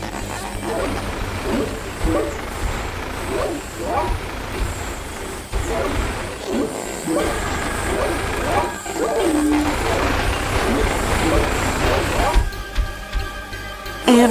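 Cartoon soundtrack: a vehicle-animal character's engine rumbling low and steady as the giraffe-crane struggles, with short wordless vocal cries from the character every second or two. Background music runs underneath and ends on a held chord near the end.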